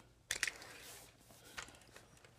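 Faint handling noise from toy cars being moved by hand: a short rustle a moment in, then a few small clicks.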